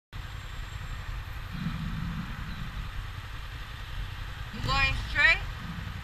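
Sport motorcycles idling at a standstill: a steady low engine rumble. A voice cuts in briefly near the end.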